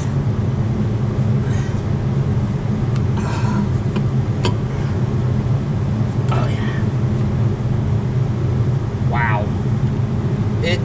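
A steady low mechanical hum throughout, with a few brief knocks and rubbery scrapes of hoses being worked off a diesel engine's intake, and a couple of short mutters.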